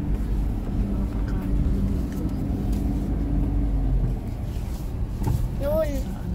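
Car cabin noise while driving: a steady low rumble of engine and road, with a level hum through the first few seconds that eases off about four seconds in. A brief voice sound comes near the end.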